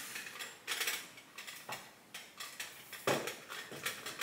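Things being handled and set down on a kitchen counter: a run of clicks, knocks and rustles, the loudest knock a little after three seconds in.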